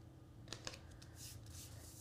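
Faint handling of glitter cardstock, with a soft rustle and a couple of light taps about half a second in, as a panel is lined up over a card base.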